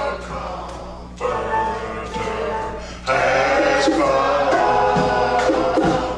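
Church choir singing a gospel song, the voices swelling louder and fuller about halfway through.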